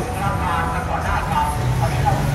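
Steady low rumble of road traffic and vehicle engines, with faint voices in the background.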